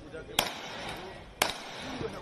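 Rifle fired into the air twice: two sharp single shots about a second apart, over a faint murmur of voices.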